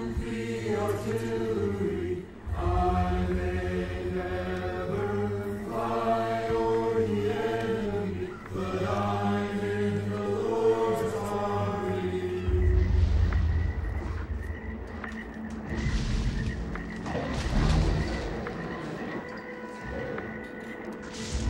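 A group of voices chanting together in held phrases of about two seconds. About twelve seconds in, the chanting gives way to a few deep booms under dramatic film music.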